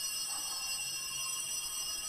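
Altar bells ringing at the elevation of the consecrated host, a run of bright, high tones held steady.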